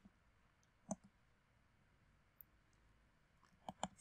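Faint, sharp computer mouse clicks in near silence: one about a second in, another past halfway, and a quick pair just before the end.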